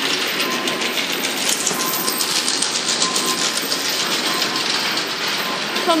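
Water-powered textile mill machinery running, a steady rapid mechanical clatter of many fast clicks.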